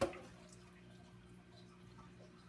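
Faint dripping and wet handling of rinsed chitterlings in a metal colander at the sink, over a steady low hum. A short knock comes right at the start.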